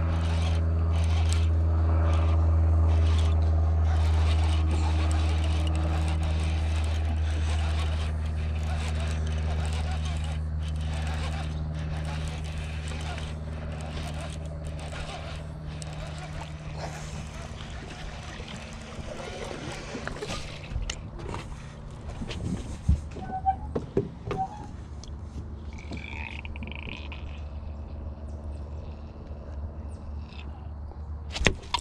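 A motor engine's steady low drone, loudest at first and fading away over about twenty seconds, with a few sharp knocks and clicks near the end.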